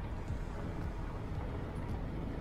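Wind buffeting the microphone: a steady low rumble with a fainter hiss above it.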